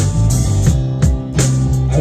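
A live rock band playing between sung lines: electric bass, electric guitar and drum kit, with a steady beat of drum hits about every two-thirds of a second.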